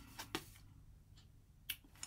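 A few faint, sharp clicks of oracle cards being handled as a new card is drawn from the deck, the loudest shortly before the end.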